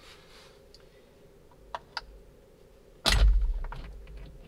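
Two faint clicks, then a sudden loud clunk about three seconds in: the spring-loaded airbag module of a Hyundai N steering wheel popping loose as an allen wrench presses the release pin in the wheel's pinhole.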